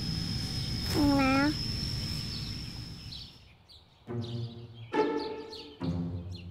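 Outdoor park background with small bird chirps and a steady high-pitched whine, broken about a second in by a brief voiced sound from a person. The background then fades out, and soft background music of spaced, sustained notes begins about four seconds in.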